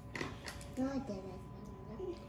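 A toddler girl's faint voice: a couple of short, soft vocal sounds, the clearer one just under a second in, as she calms down after crying.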